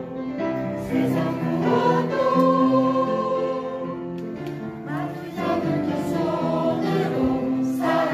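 Many voices singing a gentle Korean song in chorus over instrumental backing, holding long notes.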